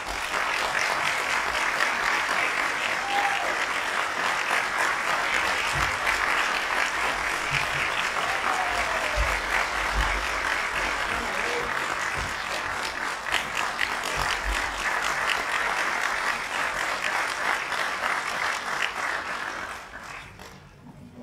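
Audience applauding: steady clapping that starts suddenly and dies away near the end.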